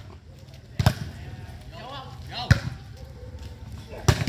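Volleyball struck by hand twice in a rally: a sharp slap about a second in and a louder one about two and a half seconds in.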